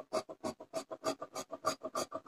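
Tailor's scissors cutting cloth in quick, even snips, about six or seven a second, each blade closing with a short crisp scrape as it works along a curved chalk line.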